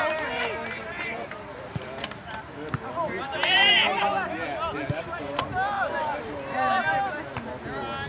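Indistinct voices of players and spectators calling out across an open soccer field, with one loud, high-pitched shout about three and a half seconds in and a few short sharp knocks.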